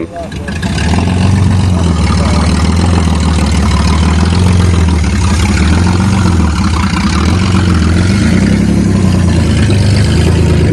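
1994 Chevrolet Cavalier's engine running close by with a steady, loud drone as the car pulls up and sits beside the listener.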